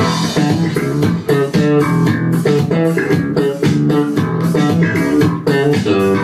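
Loud recorded music played over a club sound system, with plucked guitar and bass lines over a steady beat, as the backing track for a breakdance/street-dance battle solo.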